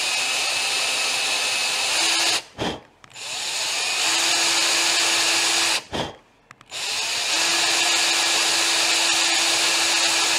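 Ryobi cordless drill with a small bit running in short bursts, drilling into the aluminium of a sheared, threaded mirror mount on a brake fluid reservoir. It stops and starts again twice, about two and a half and about six seconds in.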